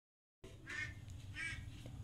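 Two faint, short bird calls, about two-thirds of a second apart, over a low background rumble.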